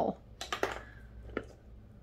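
Plastic lip gloss and lipstick tubes clicking lightly against one another as they are handled, a few separate clicks in the first second and a half.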